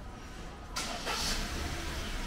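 A short hissing scrape about a second in, then rustling, as a man climbs out of a parked kei van through its open door, over a low steady hum.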